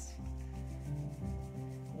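Two hands rubbing palm against palm, a steady dry rubbing.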